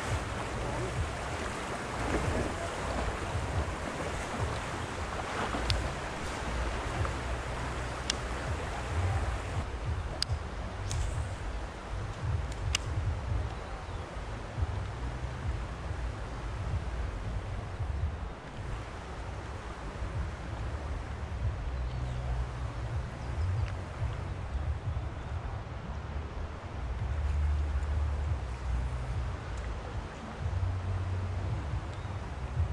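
Steady rush of flowing river water, with wind buffeting the camera microphone as a wavering low rumble. A few light clicks come between about eight and thirteen seconds in.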